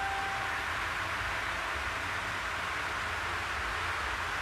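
Steady background hiss during a pause in speech, with a brief faint high tone during the first half second.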